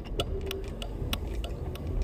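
A car's turn signal clicking steadily, about three clicks a second, over the low hum of the running engine inside the cabin.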